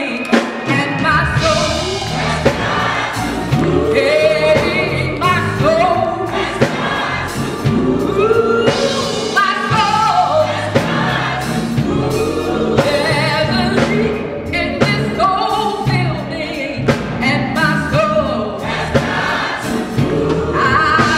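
Gospel choir singing live with a female soloist leading at the front, over low accompaniment that comes in about a second in.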